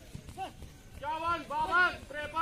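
Footfalls of a barefoot runner passing close on a dirt track, then from about a second in a man's loud, repeated shouts.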